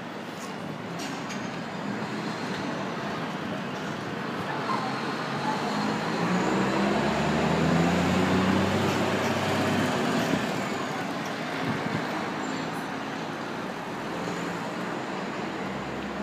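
City street traffic noise, with a motor vehicle's engine passing close that swells to its loudest about halfway through and then fades.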